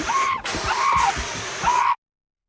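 Fire extinguisher spraying in a loud continuous hiss, broken once briefly, with short cries over it; it cuts off abruptly just before the end.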